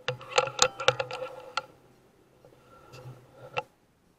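Air Arms S510 PCP air rifle being cycled by hand for the next pellet: a quick run of sharp metallic clicks with a short ringing in the first second and a half, then two more clicks near the end.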